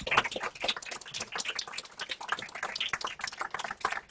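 A dense, irregular run of small clicks and rustles: paper being handled and people shuffling about at a lectern.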